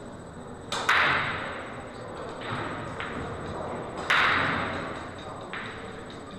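Pool balls being struck and knocking together on the table: a sharp crack about a second in and another about four seconds in, each followed by a fading rattle as the balls roll.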